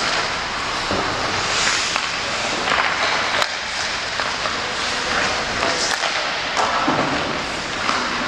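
Ice hockey warmup sounds: skate blades scraping and carving on the ice in repeated swishes, with several sharp cracks of sticks striking pucks and pucks hitting the boards.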